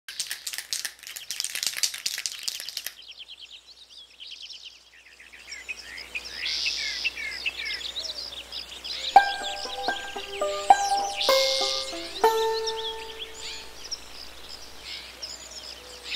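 Birds chirping and calling: a fast rasping trill at the start, then many short sweeping calls. About nine seconds in, the held notes of a melody enter beneath the birdsong.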